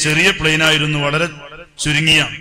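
A man speaking Malayalam: only speech.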